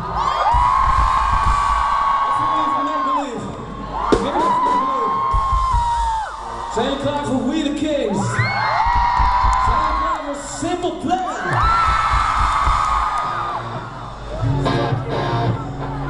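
Live rock band heard from within the audience: four long held sung notes, each two to three seconds, with the crowd yelling and singing along. A low steady note comes in near the end.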